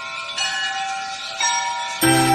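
Bell chimes ringing in the instrumental intro of a song, high and sustained. New strikes come about half a second in and again about a second and a half in, each left to ring on.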